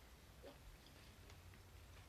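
Near silence with faint chewing of a mouthful of overnight oats and strawberries, with a few faint short clicks.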